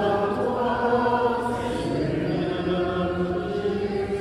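Congregation singing a Gospel acclamation in a church, several voices holding long chanted notes.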